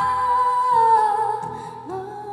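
Woman singing one long held note that sinks slightly in pitch about a second in and fades, over strummed acoustic guitar; a new sung note begins near the end.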